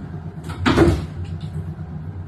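Cat exercise wheel rumbling as it turns, with a brief clatter and thump between about half a second and one second in as the cat jumps off the wheel onto the wooden floor.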